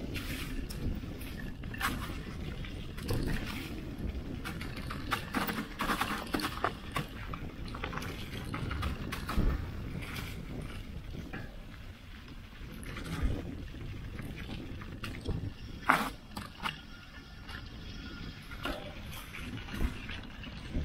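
Mountain bike riding down a leaf-covered dirt trail, heard through a camera mounted on the bike: a steady rumble of tyres and frame vibration with frequent sharp knocks and rattles as it hits bumps, the sharpest about sixteen seconds in.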